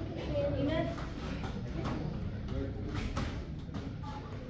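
Indistinct talking, echoing in a large training hall, with a few short knocks, the clearest about three seconds in.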